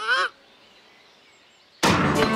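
A short, wavering honk-like squeak at the start, then quiet, then near the end a sudden loud shriek from a young girl as her tennis racket strikes the ball.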